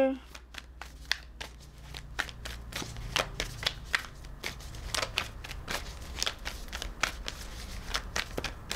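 A deck of tarot cards being shuffled by hand: many quick, irregular clicks and slides of card on card.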